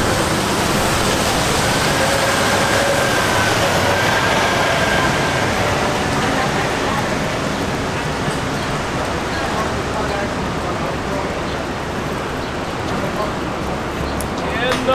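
Steady hiss of rain and traffic on a wet city street, with faint, indistinct voices of passersby.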